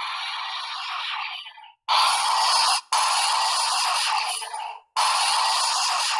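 Intro sound effects of a channel logo animation: four stretches of hissy, scratchy noise, each cut off abruptly before the next begins.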